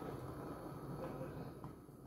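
Faint, steady low hum of background room tone, with no distinct sound event.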